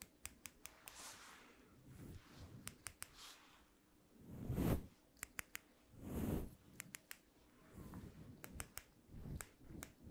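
Small stainless steel scissors snipping right at the microphone in quick clusters of crisp snips. Soft brushing rubs against the microphone's fur windscreen come between them, the loudest about four and a half seconds in and again about six seconds in.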